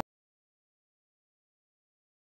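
Complete silence: the sound track drops out entirely.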